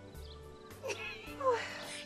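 A cat meowing, short falling calls in the second half, over soft background music.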